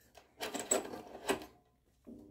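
Handling noise around a fluorescent light fitting: about a second of rattling with two sharper clicks, as the lit tube is switched off.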